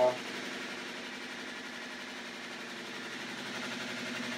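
Electric motor driving a homemade generator's 3D-printed plastic rotor of magnets past coils at about 660 rpm, running steadily with an even hum while the coils power a lit lamp as load.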